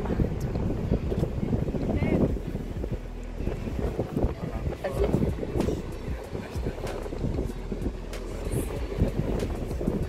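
Wind buffeting the microphone in uneven gusts, a rough low rumble.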